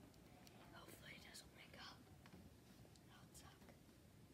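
Faint whispering over near-silent room tone, with a few hushed words between about one and two seconds in and another short whisper a little past three seconds.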